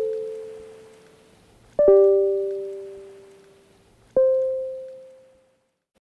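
Closing jingle of struck keyboard notes about two and a half seconds apart, each ringing and slowly fading; the last fades out shortly before the end.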